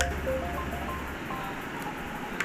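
Background music with a held bass note and a few short notes, dying away about a second in.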